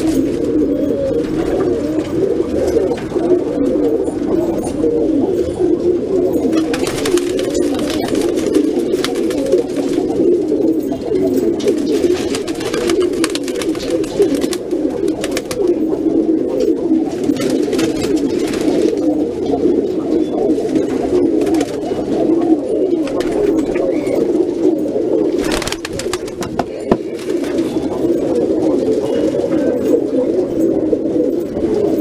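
A flock of domestic Shirazi pigeons cooing continuously, many birds overlapping in a dense, steady chorus of low coos.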